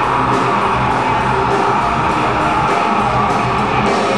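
A heavy metal band playing live: distorted electric guitars, bass and a drum kit at full volume, with cymbal strokes cutting through at a steady beat.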